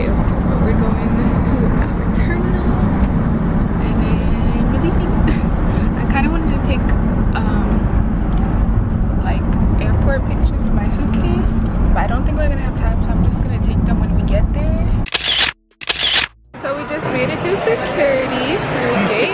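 Car cabin road noise, a steady low rumble, with a voice and music over it. About fifteen seconds in it cuts off abruptly, with two short gaps of silence, before a lighter indoor background takes over.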